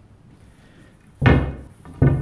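A single wooden knock about a second in, fading over about half a second, from the pool cue and balls being handled on the pool table.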